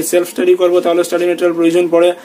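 Only speech: a man talking steadily at a fairly level pitch.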